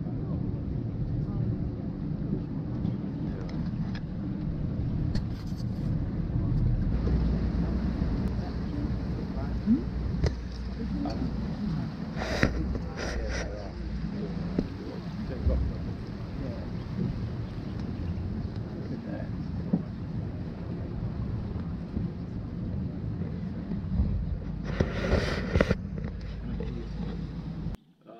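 Boat engine running with wind on the microphone, a steady low rumble that grows louder about seven seconds in. There are a few brief sharp bursts in the middle and a longer, louder rush near the end before the sound cuts off.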